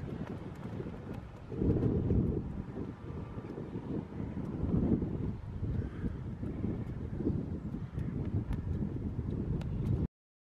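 Wind buffeting the microphone in gusts, a low rumble that swells about two seconds in and again around five seconds.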